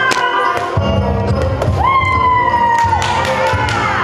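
Upbeat children's activity song from a ball-game CD playing over a steady beat, its melody scooping up into long held notes, one held for about a second near the middle.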